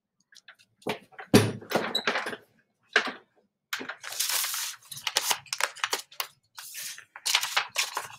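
Objects and papers being moved about on a desk: a series of knocks, clicks and rustles, with a thump just over a second in as the loudest and a longer paper rustle about four seconds in.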